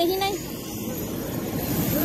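Steady running noise of a parked airliner's engines on the apron, a low rumble with a faint high whine above it. A voice trails off in the first half-second.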